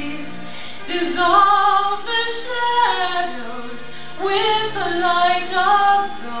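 Music: a song with a female lead voice singing over instrumental backing.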